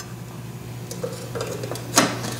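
Metal camping cookpot and lid being handled: a few faint light clicks, then one sharp clink near the end as the lid is set onto the nested MSR pot.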